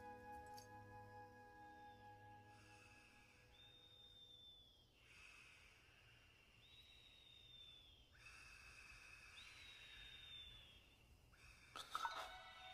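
Soft orchestral music fading out, then faint sleep sounds from a sleeping man: a breath in followed by a whistling breath out, about every three seconds, three times.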